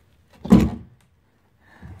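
Meyer BL400 salt spreader's 12-volt motor dropping free of its mount once its bolts are out: one short clunk about half a second in.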